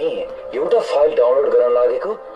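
Speech only: people talking, with no other distinct sound.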